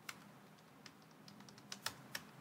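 Faint, sparse keystrokes on a computer keyboard, a handful of separate clicks with two louder ones close together near the end.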